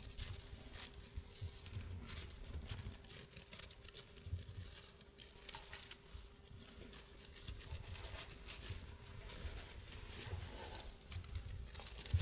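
Faint rustling and small crisp clicks of stiff, heavily starched lace being folded into pleats and pinned by hand.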